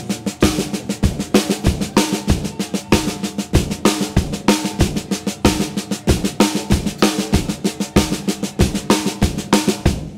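Drum kit: both sticks play steady sixteenth notes on the snare drum, with the bass drum on every quarter note. The snare is accented on beat two and on the 'and' of three and four.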